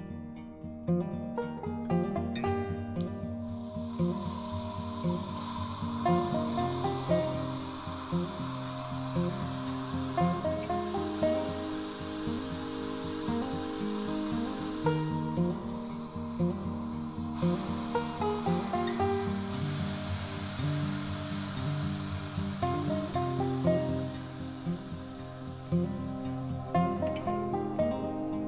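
Background acoustic guitar music over a steady air hiss with a faint high whistle, starting about three seconds in, as compressed air vents from a resin pressure pot and its pressure falls. The hiss shifts in tone twice near the middle.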